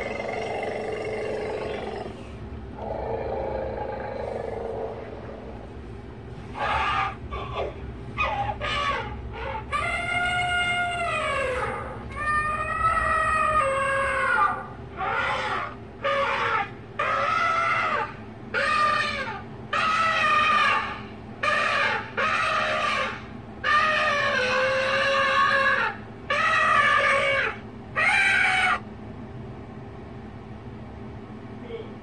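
A child's high voice making a series of wordless, drawn-out cries, each a second or two long, gliding up and down in pitch with short breaks between them. Softer breathy sounds come in the first few seconds.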